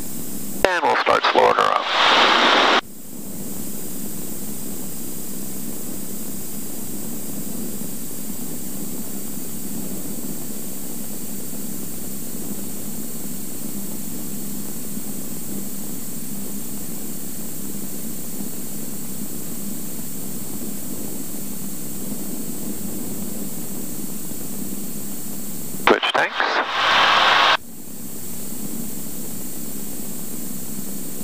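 Steady drone of the Cirrus SR22's cabin noise, from engine and airflow, heard through the headset feed. It is broken twice by short, loud bursts of radio voice transmission, each about two seconds long: one about a second in and one near the end.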